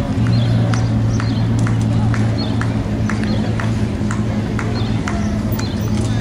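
Steady low hum of an idling vehicle engine, with light, regular clicks about two to three times a second over it.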